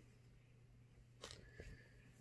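Near silence: faint handling of a cotton shirt, with one brief rustle of fabric a little after a second in.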